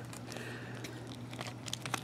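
Faint handling noise of a plastic action figure: a few soft clicks and rustles as its hip joints are worked and its soft plastic coat is moved, over a low steady hum.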